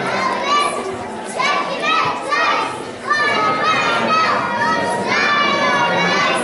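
Young children's high-pitched voices calling out in short bursts, over the chatter of an audience in a large hall.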